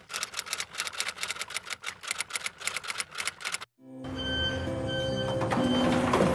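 Rapid, even clicking like a typewriter, about nine clicks a second, a typing sound effect over a name-caption graphic; it stops suddenly about three and a half seconds in. Soft background music with held notes begins just after.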